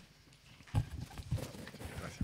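Several soft knocks and thumps from handling at the council table, irregularly spaced, starting about three-quarters of a second in.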